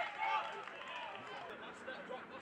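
Footballers shouting and calling to each other on the pitch during open play, with a short thud right at the start.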